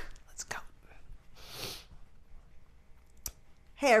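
A quiet room with a sharp click at the start and another a little after three seconds, and a short breathy sound about a second and a half in, like a woman's exhale. Near the end a woman starts speaking with "Hey".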